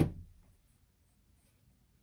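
A single sharp knock as the airboat's hull assembly, a plastic deck on an aluminium tube frame with 3D-printed floats, is handled and bumps. The knock fades within half a second, leaving only faint handling rustle.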